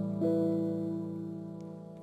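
Background music on acoustic guitar: plucked chords ringing out and slowly fading, with a new chord struck just after the start.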